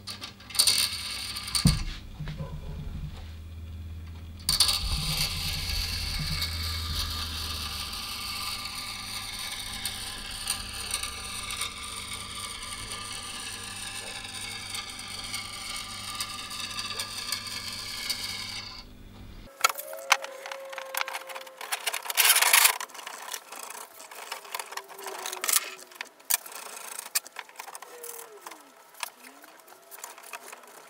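Power drill with a sanding-disc arbor in its chuck spinning a nut down a threaded steel rod. It runs steadily for most of the first two-thirds and then cuts off suddenly. After that come small metallic clicks and clinks of nuts and washers being handled on the rods.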